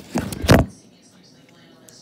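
Handling noise on the camera's microphone: a quick run of thumps and rubbing as the camera is moved and covered, stopping suddenly under a second in. Then only faint room noise.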